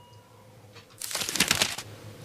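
A person sipping tea from a glass mug: a short, crackly slurp about a second in, lasting just under a second, after a near-quiet moment.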